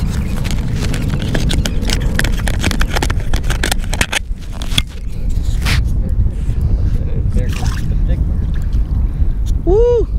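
Wind rumbling on the microphone and water sloshing against a kayak hull, with irregular clicks and knocks throughout.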